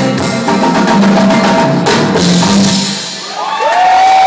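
Live Wassoulou band playing, led by drums and a steady bass line. Near the end the drumming drops away and a long high note slides up and is held.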